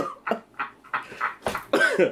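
Men laughing hard in short, breathy, gasping bursts, about four a second, some close to coughs.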